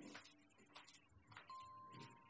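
Near silence: a few faint footsteps on a hard floor, as the tail of the background music dies away. A soft, steady high tone comes in about three-quarters of the way through.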